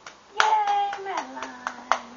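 Hands clapping about eight times, unevenly, under one long drawn-out cheering voice that starts high and drops lower about a second in.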